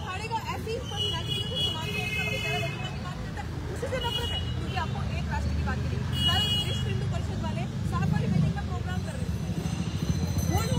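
People talking in an outdoor crowd, with a woman's voice to the fore, over a steady low rumble of traffic.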